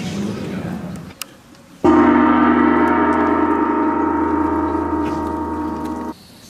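A gong struck once about two seconds in, ringing with many overlapping tones and slowly fading, then cut off abruptly right at the end.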